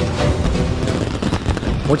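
Celebration sound effect over music: fireworks crackling and popping in a dense run of small bangs.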